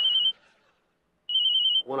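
Phone ringing with an electronic warbling ring: two short bursts about a second apart with silence between them.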